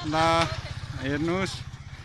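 A vehicle engine idling with a steady low pulsing hum, under two short bursts of a voice.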